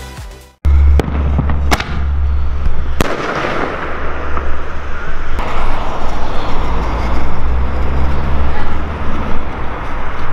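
Fireworks going off: a few sharp bangs, the clearest about a second in and about three seconds in, over a steady low rumble and a hissing crackle.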